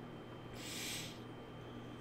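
Quiet room tone with a steady low hum, broken once about half a second in by a brief soft hiss lasting under a second.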